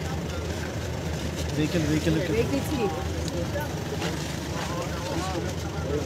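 Steady low hum of a car engine idling, with faint, indistinct voices over it.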